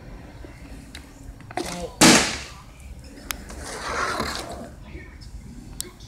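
A plastic water bottle flipped and landing hard on a tile floor about two seconds in: one loud smack that dies away quickly, followed by a couple of small knocks.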